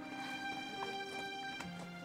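Background music of soft held notes, with a lower note coming in near the end.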